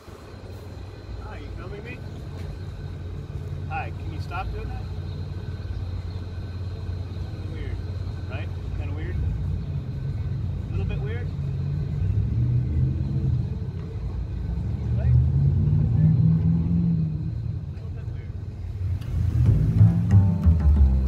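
Low, steady rumble of an SUV's engine running close by at slow speed, swelling louder about two thirds of the way in, with faint, indistinct voices over it.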